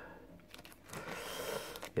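Faint rustling handling noise that swells about a second in, with a couple of light clicks near the end.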